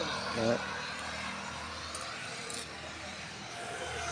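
A voice briefly just after the start, then steady outdoor background noise with no distinct event.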